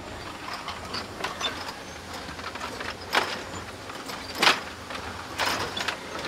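Footsteps knocking on the wooden planks of a floating barrel bridge: a few irregular thuds, the loudest about four and a half seconds in.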